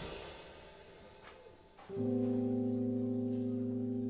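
A funk band's loud playing with drums breaks off and dies away in the room. About two seconds in, an electric keyboard starts a held chord of several notes that stays steady without fading.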